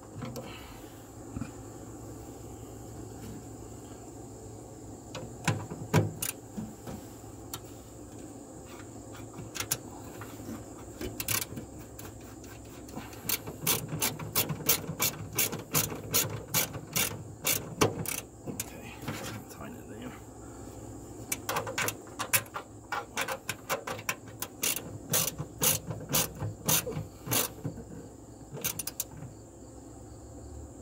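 Ratchet wrench with a 7/16 socket clicking as it tightens the nut on the electronic ignition control unit's mounting bolt, drawing the unit down against the inner fender on a lock washer to ground it. There are a few scattered clicks at first, then quick runs of clicks through the second half as the handle is swung back and forth.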